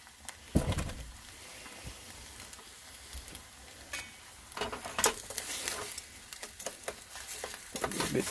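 Rice sizzling in a steel pan on a portable butane gas stove, over a steady hiss. There is a low thump about half a second in, and a few sharp clicks and knocks about five seconds in.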